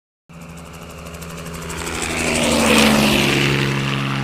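Sound effect of a propeller aircraft flying past: a steady engine drone that starts about a third of a second in, grows louder over about two and a half seconds to a peak, then holds.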